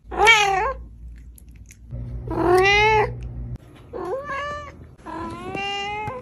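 A domestic cat meowing four times, each meow short and drawn out slightly, the first at the very start and the other three closer together later on.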